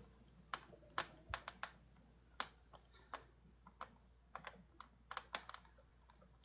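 Faint typing: about fifteen light, irregularly spaced key clicks, some in quick runs.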